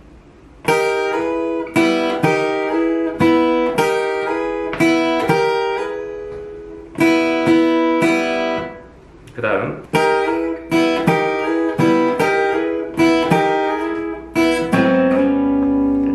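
Taylor acoustic guitar playing a boogie riff: short chords struck in a repeating rhythm, with fretted shapes slid up a fret against ringing open strings. Near the end a lower note is held.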